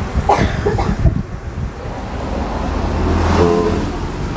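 A low steady hum, with a few knocks and rustles in the first second, and a man's short 'hmm' near the end.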